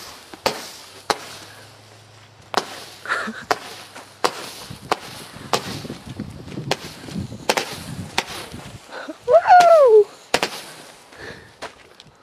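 Aerial firework firing a string of about a dozen sharp pops, irregularly spaced and a second or less apart. About nine seconds in comes a loud whooping cry that rises and falls.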